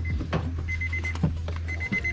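Car interior warning chime: short bursts of rapid high beeps, about one burst a second, sounding with the driver's door of a Honda Mobilio open. A few knocks and rustles come from someone getting into the driver's seat, over a steady low hum.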